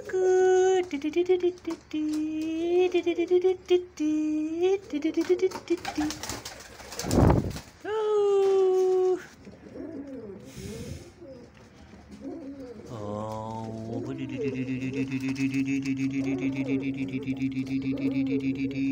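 Fantail pigeon cooing: a run of repeated throaty coos over the first five seconds and another coo about eight seconds in. A short loud noise falls just before that second coo, and a steady low hum with fast high pulsing fills the last few seconds.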